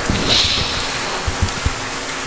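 Steady hiss of background noise on a clip-on microphone, with a short breathy sniff as he rubs his nose near the start, and a few soft low thumps later on.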